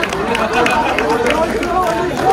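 Several people talking at once in the background, voices overlapping, with a few sharp clicks scattered through.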